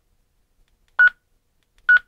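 Two short, identical key beeps from a Retevis RB27B GMRS handheld radio as its menu and arrow buttons are pressed, one about a second in and another near the end.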